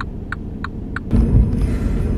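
Steady low engine and road rumble inside a moving car's cabin, with a run of short even ticks about three a second during the first second.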